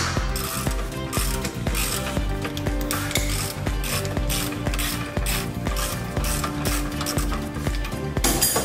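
Hand ratchet clicking in quick runs as it turns a bolt, over background music with a steady beat.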